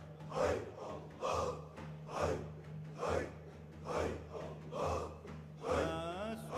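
Qadiri dervishes chanting zikr in unison as a forceful, breathy exhalation just over once a second, about seven times, over a steady low drone.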